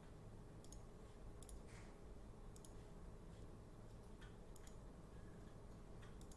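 A handful of faint computer mouse clicks at irregular intervals over near-silent room tone.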